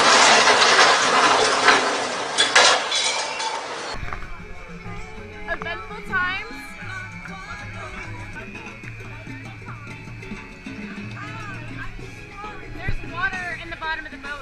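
A loud, noisy crash and rush of water as a barge-mounted crane topples over into the harbour, dying away over about four seconds. Then, after a cut, Latin salsa music plays with a steady beat, under people's voices on board a tipping tour boat.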